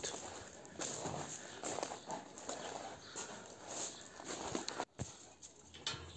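Faint, irregular scuffs and steps of a large dog moving about on loose dirt and gravel.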